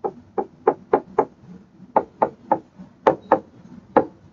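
A stylus tapping on a tablet screen while handwriting: about ten short, sharp taps in uneven clusters, one per pen stroke.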